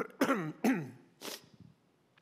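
A man coughing: a quick run of three coughs and a short breathy one, ending about a second and a half in.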